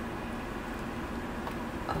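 Steady low room hum with faint handling of a small metal padlock and leather strap, and one light click about one and a half seconds in.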